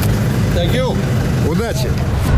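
A man's voice gives two short calls over the low, steady rumble of a rally car's engine idling.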